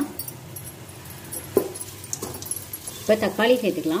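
Shallots, green chillies and curry leaves frying in oil in a pot, a quiet steady sizzle. A brief sharp sound comes about one and a half seconds in, and a voice speaks near the end.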